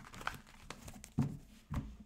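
A deck of tarot cards being shuffled by hand: light flicks and rustles of the cards, then two soft knocks, about a second and a quarter in and again near the end, as the deck is set down and squared on the table.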